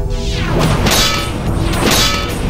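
Two swishing whooshes, each ending in a metallic clang, about a second apart, as spears strike against a metal mace, over dramatic background music.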